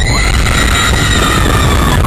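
Wooden roller coaster train running over its wooden track, a continuous low rumble, with a loud steady high-pitched tone held over it that sinks slightly and cuts off after about two seconds.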